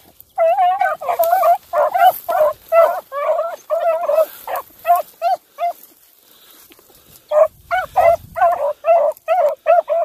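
Beagle hound baying in quick repeated barks, a run of about a dozen, a short pause, then another run near the end: a hound giving tongue while trailing a rabbit through the brush.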